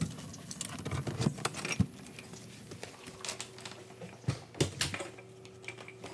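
Coming in at a front door: a run of irregular clicks, knocks and shuffles from the door, its latch and footsteps in the entryway. A faint steady hum joins about a second and a half in.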